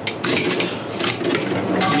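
Hands handling wiring at a cooler's evaporator housing: a run of short clicks, taps and rustles as the temperature probe's wire is pulled and worked.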